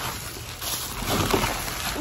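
Plastic bubble wrap rustling and crinkling as it is handled and unwrapped from a tumbler, louder from about a second in.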